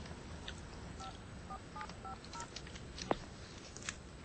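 Touch-tone telephone being dialed: a quick run of about six short two-note keypad beeps, followed by a sharp click about three seconds in.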